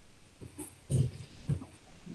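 Handling noise: a few soft knocks and bumps as a clay sculpture is lifted and carried, the loudest about a second in.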